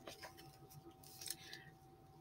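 Near silence with faint handling of a hardcover picture book: a few light taps and a brief soft rustle a little past a second in as the book is shifted and turned.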